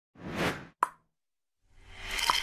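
Animation sound effects: a short whoosh, then a sharp pop just under a second in, followed by a busier mix of effects fading in near the end.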